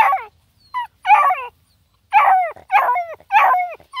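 Black and tan coonhound puppies yelping, about six short calls in quick succession, each falling in pitch.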